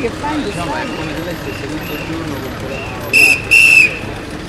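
Two short, loud, high-pitched whistle blasts in quick succession near the end, over the chatter of a walking crowd.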